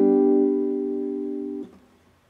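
Acoustic guitar, capoed at the seventh fret, with a strummed chord ringing and slowly fading. About one and a half seconds in, the strings are damped with the palm and the chord cuts off.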